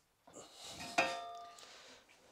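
Metal wing-stay bar worked in a steel bench vice: a short scraping rise, then about a second in a sharp metallic clank that rings on with a clear, bell-like tone for about half a second.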